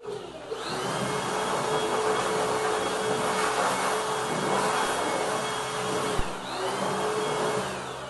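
Corded handheld electric air blower running with a steady motor whine, blowing dust off a wooden bed. It spins up just after the start; around six seconds in there is a single knock, then the motor briefly slows and speeds up again.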